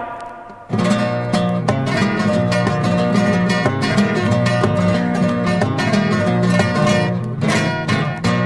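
Instrumental break of a sevillanas song, with guitars plucked and strummed in a steady rhythm and no singing. The music drops away at the start and comes back in under a second in.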